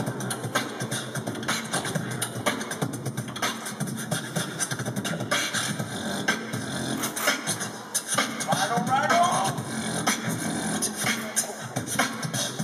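Beatboxing through PA speakers: a steady rhythm of vocal kick drums and sharp snare and hi-hat clicks over a deep bass. A short wavering pitched vocal line comes in a little after eight seconds.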